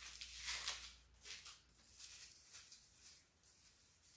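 Faint rustling and crackling of dry, papery amaryllis (hippeastrum) bulb skins being rubbed off by hand, a scatter of short dry crackles.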